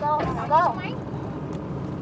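A person's voice speaks briefly in the first second, over the steady low hum inside a sleeper bus; the hum then carries on alone.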